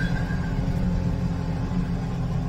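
Tractor engine running steadily, heard from inside the closed cab as a low, even rumble.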